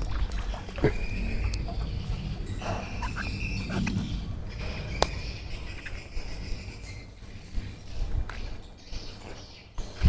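A person climbing out of a shallow pond and stepping along its brick edge: scattered knocks and clicks, one sharp click about halfway through. A steady high call sounds in two stretches in the background during the first half.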